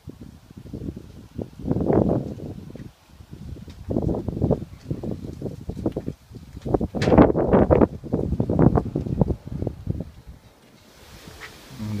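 Gusty wind buffeting the microphone in irregular rushes, with leaves rustling; the strongest gusts come about seven to nine seconds in. The wind is picking up.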